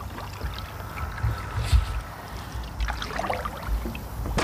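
Canoe paddle strokes, a wooden paddle dipping and pulling through the water, over a low, uneven rumble.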